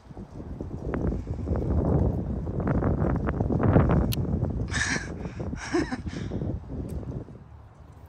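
Gusting wind buffeting the microphone: a low rumble that builds to a peak about four seconds in, then dies away.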